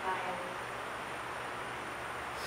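A woman's voice, faint and distant, in about the first half second, then a steady hiss.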